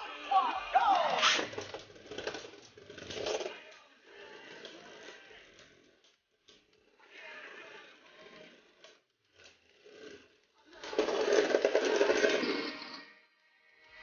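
Beyblade Burst spinning tops whirring and clashing inside a plastic stadium, with irregular knocks and scrapes and quiet gaps between hits. A loud run of clashes about eleven seconds in ends with one top bursting apart.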